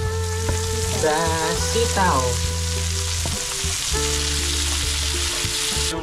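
Pork, tomato and freshly added long beans frying in a hot wok: a steady sizzle.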